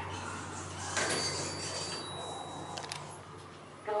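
Elevator car doors sliding open on arrival at a floor. The car's steady hum runs under it, a rush of door movement starts about a second in with a thin high whine for about a second and a half, and a couple of clicks come near the end.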